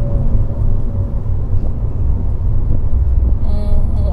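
Cabin noise of an Abarth 695 Tributo 131 Rally on the move: its 1.4-litre turbocharged four-cylinder and the road make a steady low rumble inside the car.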